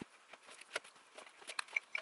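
Scattered light clicks and taps of things being picked up and moved around on a metal rolling book cart, with a couple of short ringing clinks near the end.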